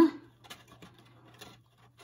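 Faint, scattered light ticks and taps of fingers handling paper and pressing a clear window-sheet strip into a small kraft cardboard box.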